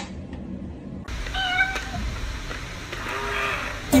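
A sharp click at the very start, then two short meows a second or so apart, the second lower-pitched than the first.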